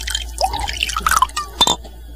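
Liquid being poured into a glass, with dripping and gurgling blips, as a shot of drink is served.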